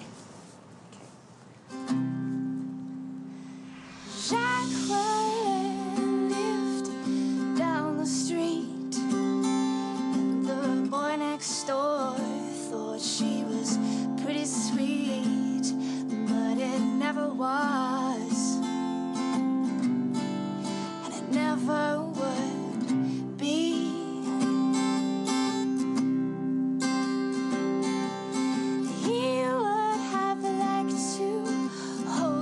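A woman singing to her own acoustic guitar accompaniment. The guitar comes in about two seconds in, and her voice joins a couple of seconds later.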